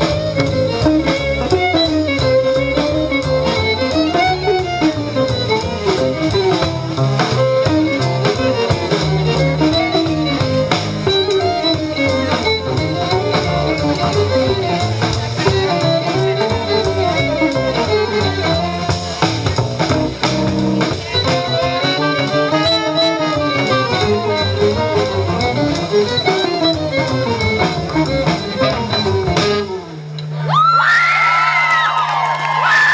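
Live small jazz band playing: a violin plays a winding melody over hollow-body archtop guitar, upright double bass and drum kit.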